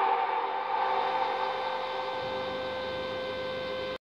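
Electronic music's closing sustained synth chord: several steady tones that fade over the first second or so, hold level, then cut off abruptly at the end.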